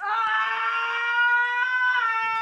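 A woman's long, high-pitched scream, held at one steady pitch.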